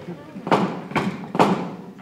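Three knocks on a wooden door, evenly spaced about half a second apart.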